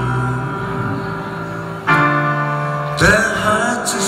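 Live band music: a slow instrumental stretch of held chords between sung lines, with the chord changing about two seconds in and a new swell entering near the end.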